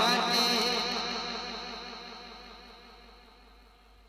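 The end of a sung naat phrase: a held, wavering vocal note that fades away slowly, as through an echo tail, with a thin steady high tone beneath it.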